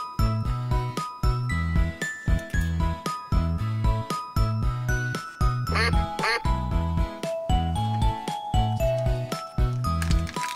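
Cheerful children's background music with a steady beat and a tinkly melody, with two short duck quacks about six seconds in.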